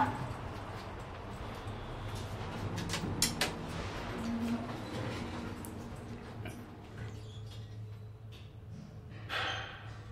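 MontgomeryKONE traction elevator car with its doors closing: a steady low hum, with scattered clicks and knocks and a short tone about four seconds in.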